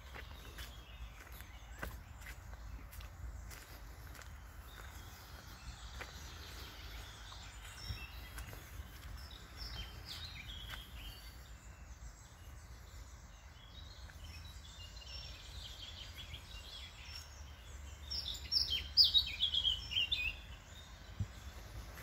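Woodland birdsong with faint footsteps on a dirt path over a steady low rumble; near the end a bird sings a loud, fast run of high chirping notes lasting about two seconds.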